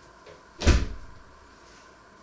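A single loud thud about two-thirds of a second in, fading out over about half a second.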